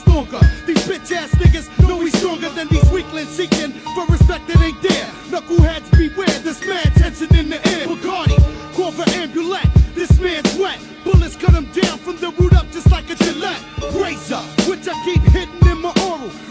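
Hip hop track: a rapper's verse over a beat with a heavy, regular kick drum.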